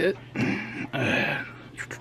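A man's low, wordless mutter and breath, with a couple of faint light clicks near the end.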